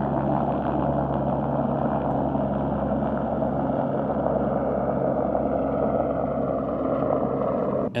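Helicopter flying overhead, a steady drone of engine and rotors.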